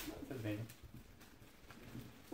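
A person's short, low hummed murmur about half a second in, after a brief rustle of gift wrapping at the start.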